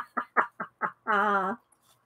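A woman laughing: a quick run of short "ha" bursts, about five a second, ending in one longer drawn-out laugh about a second in.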